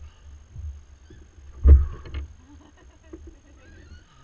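A fish being hauled by hand out of the water onto a fibreglass boat deck: one heavy thump about one and a half seconds in, then a lighter one half a second later, with a few small knocks.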